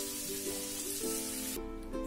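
Vegetables sizzling in a frying pan over a gas flame, with background music playing. The sizzle cuts off suddenly about one and a half seconds in, leaving only the music.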